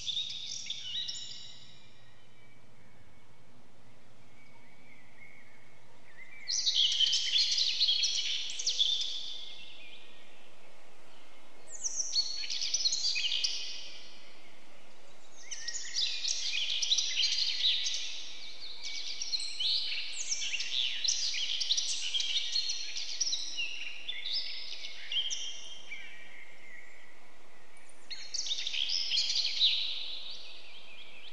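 Birds chirping in several bursts of rapid high notes, each a few seconds long, with short pauses between.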